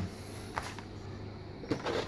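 Quiet steady low hum with a few faint clicks and taps from handling, a small cluster of them near the end.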